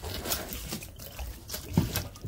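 Water sloshing and gurgling inside a thermal expansion tank as it is tipped over, with a few irregular knocks from handling. The tank is waterlogged, full of water.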